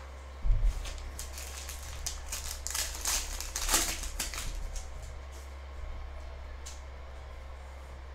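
A foil pack of Panini Prizm football cards being opened and its stiff chromium cards handled: a run of small crinkles, clicks and slides, busiest in the first half, over a steady low electrical hum.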